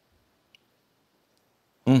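Near silence with one faint short click about half a second in, then a man's voice begins just before the end.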